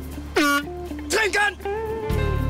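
A horn sounding a quick run of short toots that slide up and down in pitch like a little tune, over a steady low hum.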